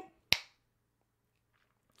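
A single sharp click about a third of a second in, then near silence with a faint steady hum.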